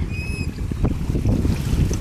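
Strong wind buffeting the microphone in a low, gusty rumble. A brief high squeak sounds just after the start and a single knock a little before the middle.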